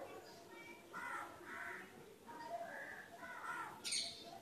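Crows cawing repeatedly, several harsh calls a fraction of a second each, with a sharp click just before the end.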